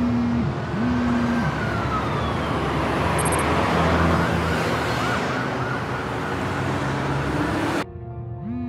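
Busy city street with traffic noise and an emergency vehicle siren: first a long falling wail, then a quick warbling yelp. The street sound cuts off suddenly near the end.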